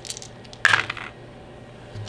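Small plastic game pieces clattering on a wooden table: a few light clicks, then a short, louder clatter just over half a second in.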